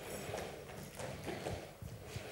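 Faint room noise in a lecture hall, with a few soft, irregular knocks and taps.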